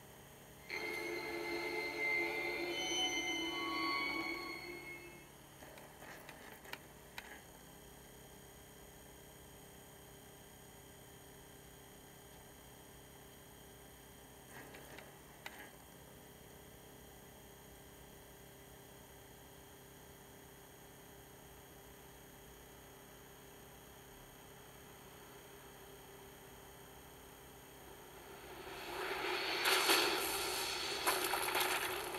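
A DVD menu transition sound effect of ringing, sustained tones lasts about four seconds. Then comes a long, very quiet stretch of low hum with a few faint clicks while the disc loads. Near the end the film's opening music swells in.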